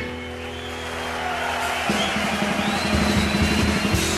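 Live blues band holding and playing on at the close of a number, with audience cheering and applause swelling underneath and a long high whistle near the end.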